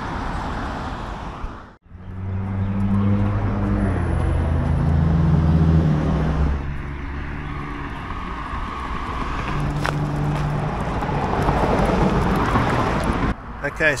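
Motor vehicles passing on a road: a low, steady engine drone builds and runs for several seconds, another vehicle goes by later, and a single sharp click sounds about two-thirds of the way through.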